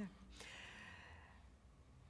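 Near silence with a soft breath out, a sigh-like exhale, starting about half a second in and fading away over about a second.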